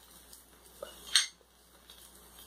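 One sharp clink about a second in, as a small glass bowl is set down on a stone kitchen counter.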